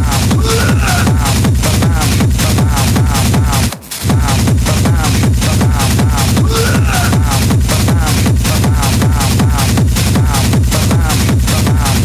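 Schranz hard techno from a DJ mix: a fast, steady four-on-the-floor kick drum with driving percussion and a repeating looped riff, loud throughout. The beat briefly drops out about four seconds in, then kicks straight back in.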